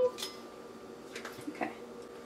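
Light clicks and clinks of metal measuring spoons being handled on a stone counter while scooping yeast, over a faint steady hum.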